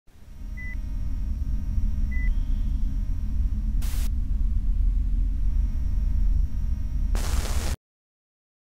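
Designed intro sound effect: a low rumble that swells in over the first second and holds, with two short high beeps in the first two and a half seconds, a brief burst of static about four seconds in and a longer one near the end, then it cuts off suddenly.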